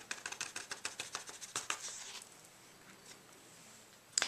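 Clear embossing powder pattering off bent cardstock back into its jar as the card is tapped: a quick run of light ticks that stops a little over two seconds in.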